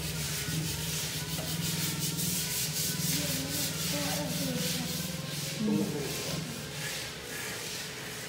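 Quick rhythmic rubbing strokes, about three or four a second, of a cloth wiping window glass beside a bamboo roll-up blind. The strokes grow fainter after about five seconds.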